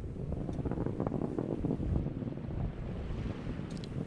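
Steady low rumbling roar of a Falcon 9 rocket's first-stage Merlin 1D engines in flight, with a faint crackle in it.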